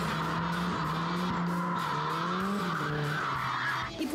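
Nissan S13 drifting: tyres squealing in one long continuous screech over the engine held at high revs, cutting off abruptly near the end. Background music plays underneath.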